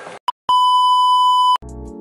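An electronic beep sound effect: one short blip, then a steady high beep held for about a second that cuts off sharply. Music starts right after it, near the end.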